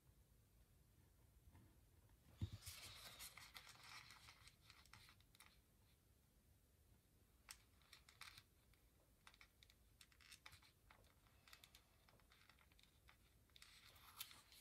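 Faint rustling of paper sheets being handled and lifted, most noticeable for a few seconds starting about two and a half seconds in, then scattered light ticks and taps.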